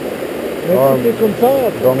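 A man talking over the steady rush of a fast, swollen river running through rapids; his voice comes in about two-thirds of a second in.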